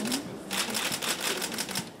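Camera shutters firing in rapid, overlapping bursts of clicks, as press photographers shoot arriving officials. The clicking starts about half a second in.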